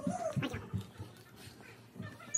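A boy reacting to chili-hot noodles just after a cough: a short wavering whine, then a few quick huffing breaths about half a second in.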